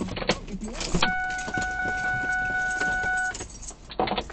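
Clicks and handling noises inside a stopped car, with a steady electronic warning tone held for about two seconds from about a second in.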